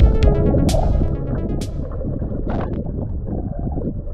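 Upbeat electronic pop music with a steady beat and crisp percussion, fading down about a second and a half in and leaving a low rumble.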